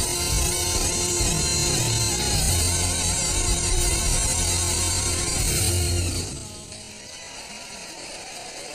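Instrumental passage of a stage musical's band playing with sustained bass notes, dropping away to a quieter passage about six seconds in.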